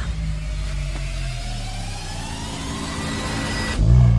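Suspense sound design: a low rumbling drone under a thin tone that rises slowly and steadily, ending in a deep boom just before the end.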